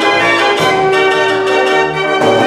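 A 75-key Decap dance organ from 1927 playing a tune: sustained pipe chords over bass notes that change about every half second.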